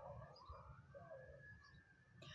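Near silence with a faint, slowly rising whine that levels off near the end.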